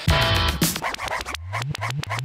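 Electronic downtempo music built from tape-loop samples: chopped, stuttering fragments with scratch-like sweeps that rise in pitch in the second half.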